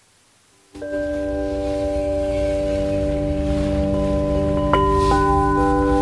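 Quartz crystal singing bowls struck with mallets: several bowls start ringing together less than a second in, holding long steady overlapping tones. A few seconds later, two more strikes add higher tones to the ringing.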